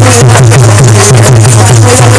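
Folk bhajan ensemble playing: a dholak beats a fast steady rhythm, about five strokes a second, under harmonium and a hand frame drum.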